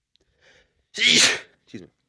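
A man sneezes once, loudly, about a second in, after a short intake of breath, with a brief low vocal sound right after. It is the second of two sneezes in a row.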